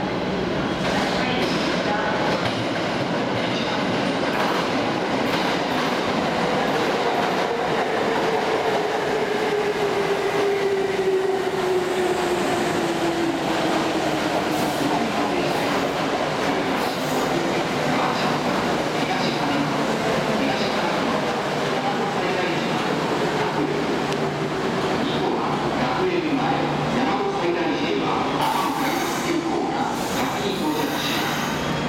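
Kintetsu 8000-series and 8600-series express train arriving at an underground platform. It rumbles over the rails with a whine that falls slowly in pitch as it brakes to a stop.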